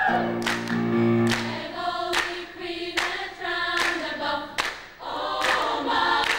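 A choir singing: long held chords at first, then shorter phrases, with a brief pause about five seconds in.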